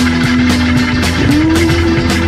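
Rock music with a steady beat and held notes that step up in pitch about a second in.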